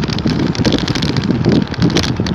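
Wind buffeting the microphone of a phone carried on a moving bicycle, a loud, uneven rumble mixed with road noise from riding over rough pavement.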